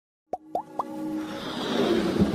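Electronic intro sound effects: three quick rising bloops about a quarter second apart, then a whooshing swell that builds toward the end.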